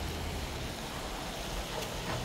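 Steady hiss of light rain on wet pavement, with a low rumble underneath.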